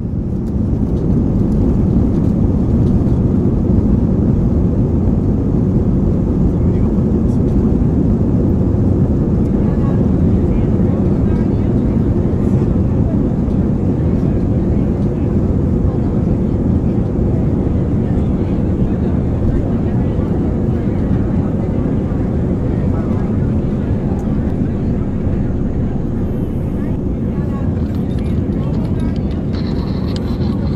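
Airliner cabin ambience: a steady low jet-engine rumble that fades in over the first couple of seconds and then holds.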